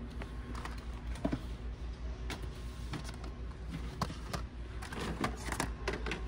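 Plastic blister-packed die-cast cars being handled and taken off metal peg hooks: scattered light clicks and plastic rattles over a steady low hum.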